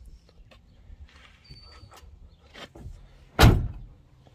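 Car door of a 1969 Camaro being shut with one solid thud about three and a half seconds in, preceded by faint clicks and rustle.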